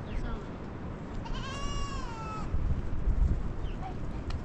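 A goat bleating once: a single long call, a little over a second, that rises and then falls in pitch, about a second in.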